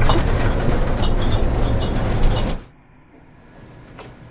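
A loud, steady rumbling noise that cuts off abruptly about two and a half seconds in, leaving faint room tone.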